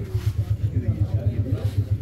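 A steady low throb pulsing about six times a second, like a small engine running, with the low murmur of an onlooking crowd above it.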